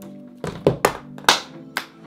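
Background music with an uneven run of about five sharp, loud hand claps.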